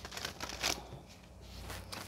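Faint handling of tarot cards: a sharp click, then a few soft rustles and light clicks of card stock, the strongest just under a second in.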